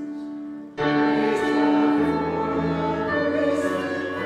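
Many voices singing a hymn together. There is a short break between lines just under a second in, then the next line comes in at full strength.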